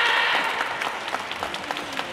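Audience applauding with many quick handclaps, and a voice calling out during the first half second.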